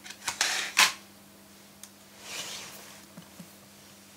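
Handling noise: a quick cluster of sharp clicks and taps in the first second, then a soft rustle about two seconds in and two light ticks, over a faint steady low hum.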